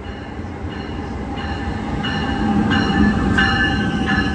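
An NJ Transit train pulling into the station platform, a rumbling rush that grows louder as it comes in. High metallic squealing tones from its wheels and brakes come and go over the rumble and grow stronger about halfway through.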